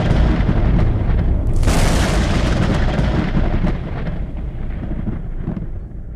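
Thunder sound effect: a rumbling thunderclap, with a second sharp crack about two seconds in, rolling on and slowly fading away.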